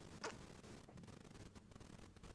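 Near silence: room tone in a pause between spoken passages, with one brief faint noise about a quarter second in.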